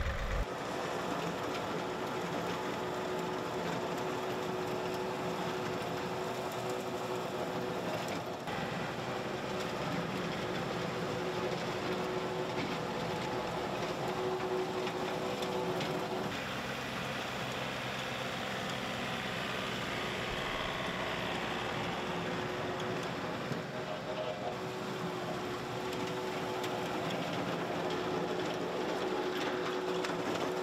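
John Deere 1025R compact tractor's three-cylinder diesel running steadily under load. It drives a Tufline RTM72 PTO rotary tiller whose tines churn through the soil.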